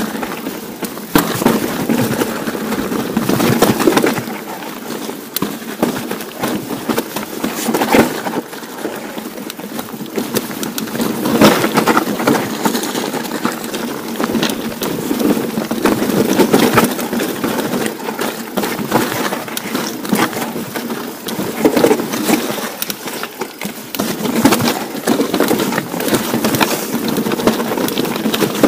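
Hardtail mountain bike descending a rocky trail: tyres crunching over gravel and rock, with frequent irregular knocks and rattles from the bike as it rides over the stones.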